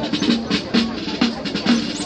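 Brass band playing a march, with drum strikes and short low brass notes on a steady, even beat.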